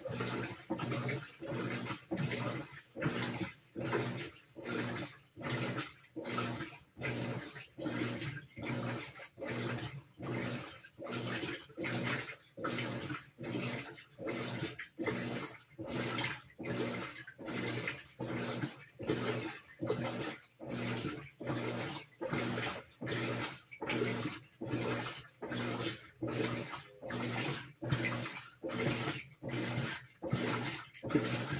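Whirlpool WTW4816 top-load washer in its rinse stage, its motor and wash plate working the water back and forth in about three strokes every two seconds, each stroke a humming swish of sloshing water.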